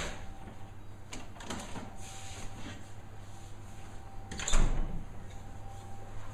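A refrigerator door being opened with a click, things being handled inside, then the door shutting with a thud about four and a half seconds in, the loudest sound. A low steady hum runs underneath.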